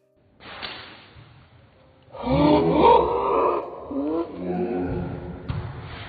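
A short rush of hiss just after the start, then from about two seconds in loud, high, wavering shrieks and yells of alarm, recorded on an old phone with a thin, tinny sound.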